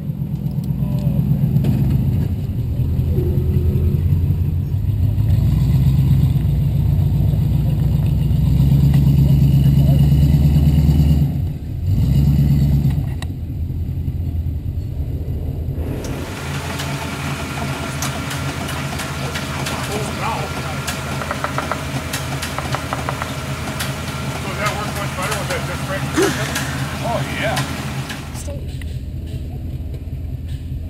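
A vehicle engine running under load, its rumble swelling and easing, with a short dip partway through. About sixteen seconds in the sound changes abruptly to a thinner, noisier engine sound peppered with small clicks and crackles.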